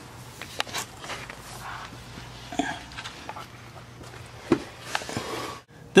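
Scuffling and handling noise with scattered light knocks from a person getting under a car with a handheld camera, over a steady low hum.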